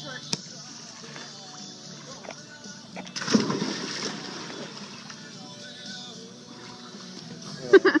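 A person jumping feet-first into a swimming pool: one sudden loud splash about three seconds in, then the water churning and settling for about a second.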